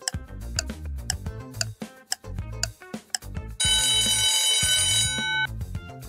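Upbeat background music with a regular ticking beat. About three and a half seconds in, an alarm-clock ring sound effect goes off for about a second and a half, loud over the music, marking the end of the countdown timer.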